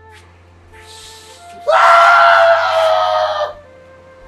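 A man lets out one loud, drawn-out wail of grief lasting about two seconds, starting a little after a softer breathy sob. Soft background music with steady held notes plays underneath.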